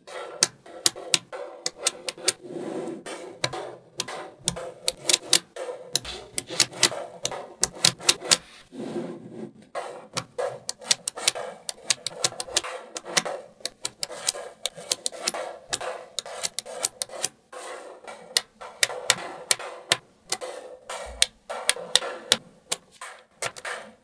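Small magnetic balls clicking and snapping together as rows of them are pressed into place and adjusted: a dense, irregular run of sharp clicks, some louder snaps among softer ticks.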